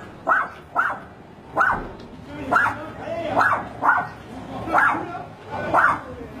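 A dog barking repeatedly: about eight short, loud barks at an uneven pace, roughly one every half second to second.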